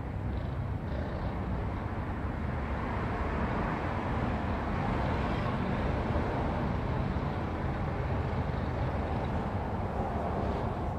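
Steady road traffic noise with no distinct events, swelling about halfway through as if a vehicle is passing, then easing off.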